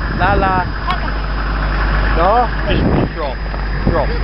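Children's high-pitched voices calling out in short bursts, over the steady low rumble of idling convoy truck engines.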